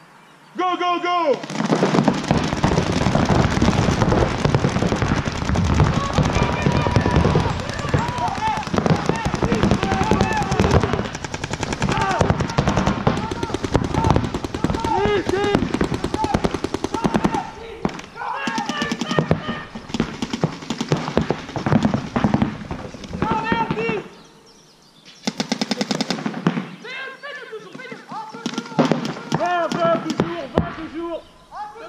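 Paintball markers firing in rapid strings of shots, many a second, with players shouting over the firing. The shooting starts abruptly within the first second and breaks off briefly about 24 seconds in before picking up again.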